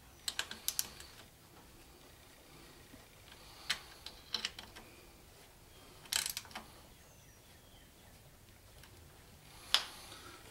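Ratchet wrench clicking in several short bursts as bolts on a transfer case are tightened down, with light metal clinks of the socket on the bolt heads.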